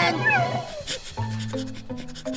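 Cartoon soundtrack: a short cat-like cry that rises and falls just at the start, then background music picking out a melody of short held notes over a bass line from about a second in.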